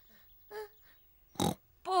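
Cartoon piglet giving a short faint crying whimper, then a short noisy breath about a second and a half in; a woman's voice begins right at the end.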